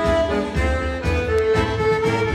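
Chromatic button accordion playing a lively dance tune in sustained, reedy held notes, over a steady low bass beat.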